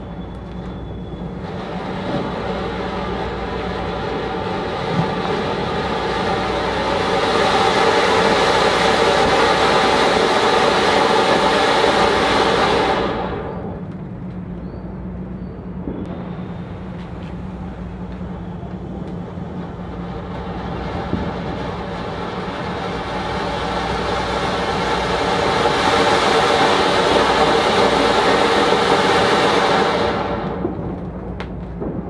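Anar (flower-pot fountain firework) spraying sparks with a rushing hiss that builds over several seconds, holds loud, then cuts off suddenly as it burns out. A few seconds later a second anar catches and builds to the same loud hiss.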